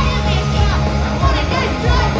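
Live punk rock band playing loud and steady: electric guitars, bass and drums, with a woman singing over them.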